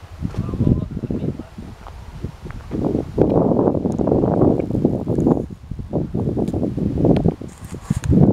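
Footsteps crunching on gravel with wind buffeting the microphone, in irregular loud rushes that are heaviest in the middle.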